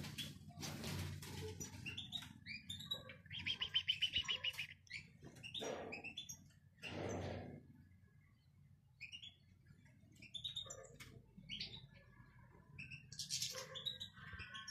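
Caged European goldfinches chirping and twittering, with a fast trill about three to four seconds in and scattered short calls later. Two brief, louder noisy sounds come around six and seven seconds in.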